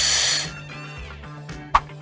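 A short hissing sound effect, about half a second long at the start, over quiet background music.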